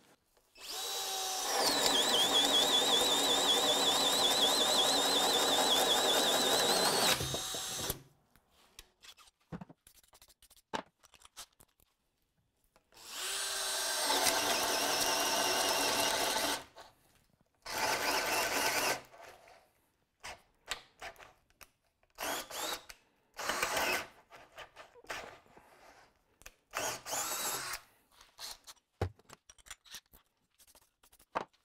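Cordless drill boring a 2-9/16-inch self-feed wood bit through a pine 2x6: the motor whines, wavering under load, over the cutting noise of the bit for about seven seconds. A second run of about four seconds comes mid-way, then a shorter one. Near the end there are several short spurts as the trigger is pulled and released.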